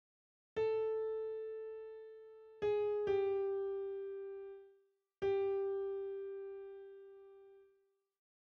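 FL Keys electric piano plugin in FL Studio sounding four single preview notes as a piano-roll note is dragged to a new pitch. Each note rings and fades over about two seconds, stepping down from A to G-sharp to G, and the G sounds twice.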